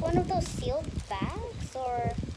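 A high-pitched voice making short wordless vocal sounds, with small rustles and knocks from hands working a plastic packet.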